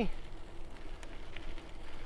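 Electric bike rolling along a gravel path: a steady low rolling and wind noise with a faint steady hum under it.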